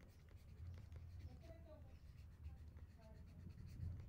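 Faint scratching of a pen stylus as words are handwritten on a writing surface, over a low steady hum.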